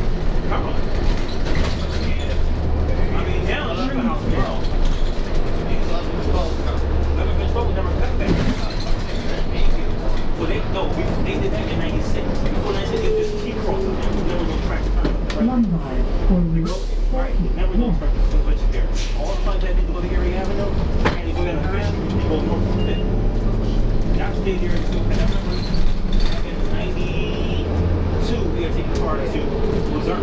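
New Flyer D40LF transit bus with a Cummins ISL diesel and Allison B-400R automatic transmission running under way, heard from inside the cabin, its engine note rising and falling in steps as the bus speeds up and slows. Indistinct voices sound over the bus noise.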